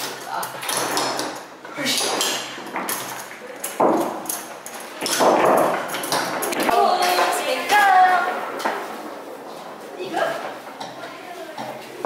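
Foosball game in play: the hard plastic ball knocking off the plastic figures and the table's wooden sides, with the rods clacking, in many sharp, irregular knocks.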